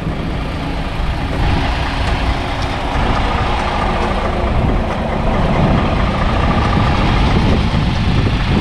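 Diesel truck engine idling steadily close by.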